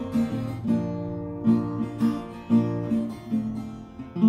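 Acoustic guitar played alone, plucked notes and chords sounding in a slow pattern of about two attacks a second, each left to ring.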